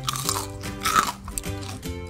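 A crisp bánh xèo made in a waffle maker crunching twice, the second crunch about a second in and louder, over background music with a steady beat.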